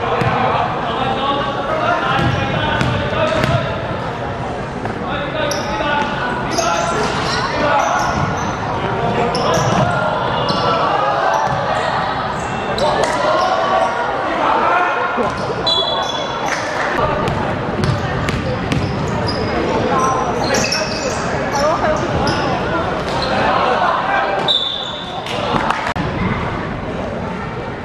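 Basketball game in a large indoor sports hall: a ball bouncing on the wooden court amid players' voices calling out, loud and continuous throughout.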